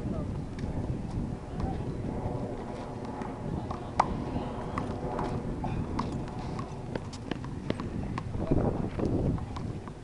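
One-wall handball rally: a small rubber ball being slapped by hands and smacking off the concrete wall and court, an irregular series of sharp claps, the loudest about four seconds in. Voices are heard in the background, louder near the end.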